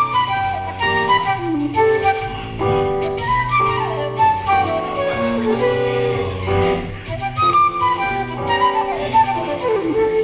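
Live instrumental music: a flute plays the melody, with slides between notes, over a low accompaniment.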